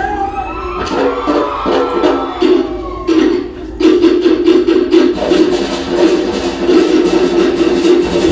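Cook Islands drum ensemble of slit log drums and bass drum playing a fast drum-dance rhythm. For the first three seconds the drumming is thinner under a high wavering call, then about four seconds in the full ensemble comes back in, dense and steady.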